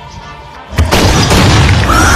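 Boom sound effect: a low rumble, then about a second in a sudden, very loud crash that stays loud.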